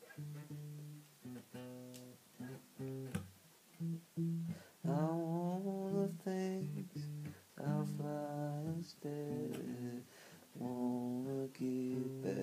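Acoustic guitar strumming chords in short, stop-start phrases, each chord cut off briefly before the next.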